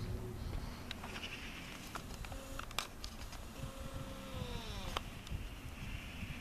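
Faint outdoor street ambience with a low steady hum and a few light clicks. In the second half comes one drawn-out pitched call that holds its note and then falls in pitch.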